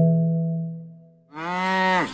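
A struck keyboard note of a children's song fades out, then a little past halfway a cow's moo begins, one long call that carries on past the end.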